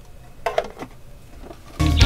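Low room tone with a faint knock about half a second in, then upbeat swing-style background music cuts in abruptly near the end.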